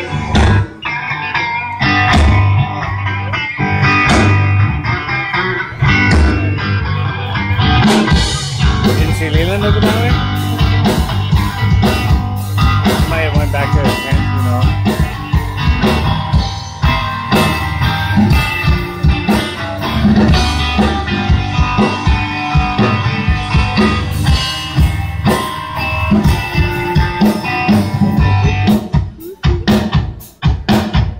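Live band playing a bluesy rock instrumental: guitar with bending notes over a drum kit. The drumming grows dense and fast from about eight seconds in.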